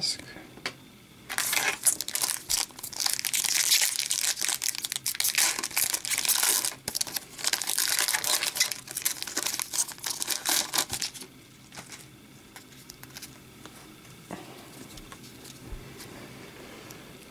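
A hockey card pack's wrapper being torn open and crinkled in the hands, a dense crinkling from about a second in until about eleven seconds in, then quieter handling of the cards.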